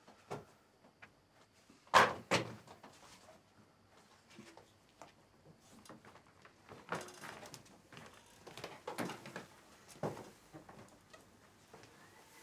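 A door shutting with a sharp knock about two seconds in and a smaller knock just after, then scattered footsteps and rustling as people walk in.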